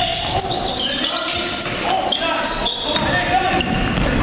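Live sound of an indoor basketball game: the ball bouncing, short high squeaks from sneakers on the hardwood, and players' voices, echoing in a gym hall.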